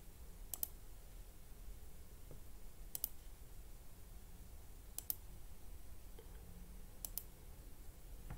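Faint computer mouse clicks: four clicks about two seconds apart, each a quick double tick, over a low steady room hum.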